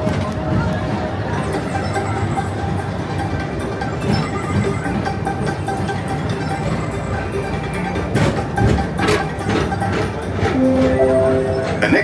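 PeopleMover ride vehicle rolling along its track, heard from on board: a steady rumble, with a few clacks about eight to nine seconds in. Music plays underneath.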